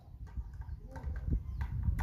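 Low rumbling noise on the microphone, typical of wind or handling, growing louder toward the end, with a few faint taps.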